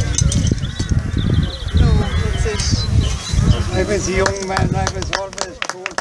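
Outdoor ambience of people talking, with a bird's short high trill about a second in. Heavy low rumble, like wind on the microphone, runs through the first few seconds.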